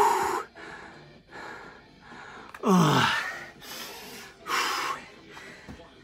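A man breathing hard to recover between exercise intervals: loud, open-mouthed breaths, with a voiced exhale that falls in pitch about three seconds in and another loud breath shortly before the end.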